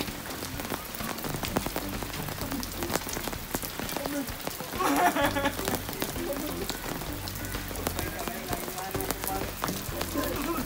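Steady rain falling, with many sharp drop clicks. A person's voice is heard briefly about five seconds in.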